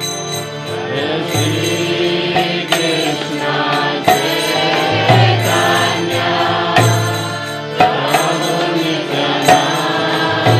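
A man singing a devotional mantra chant to his own harmonium, the harmonium's reedy chords held steady under the voice. Occasional sharp, ringing strikes sound over the music.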